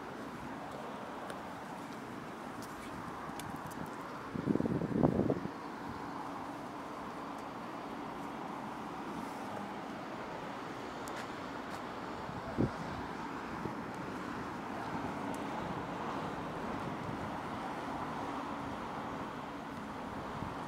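Steady distant city street traffic, with a brief loud burst of low noise about four and a half seconds in and a single sharp knock a little past the middle.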